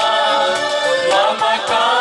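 A group of girls singing a hymn together in unison, holding long notes and sliding between pitches.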